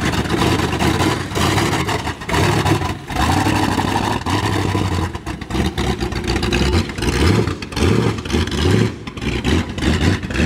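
Lifted Jeep Willys mud truck's engine running as the truck drives off, its revs rising and falling several times as the throttle is worked.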